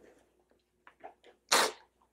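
A man's single short, sharp burst of breath about one and a half seconds in, a stifled snort of laughter. A few faint clicks come just before it.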